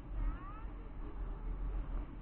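Wind buffeting the microphone in flight, an uneven low rumble. About a quarter of a second in there is one brief high-pitched gliding cry lasting about half a second.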